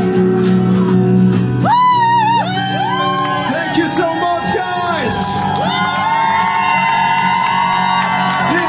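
Live acoustic guitar and singing: guitar chords ring on their own at first, then high, wordless vocal notes that slide and waver with vibrato come in over the guitar about two seconds in.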